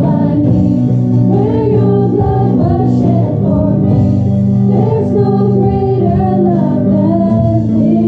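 Voices singing a Christian worship song together, choir-like, over sustained instrumental accompaniment.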